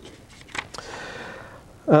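Sheets of paper being handled and slid over one another: a few light taps, then a rustle of about a second.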